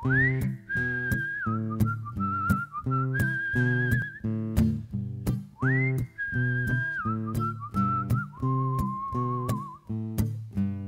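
A whistled melody over a strummed acoustic guitar: two whistled phrases, each opening with a quick upward slide and then wavering gently, while the guitar keeps a steady strummed rhythm.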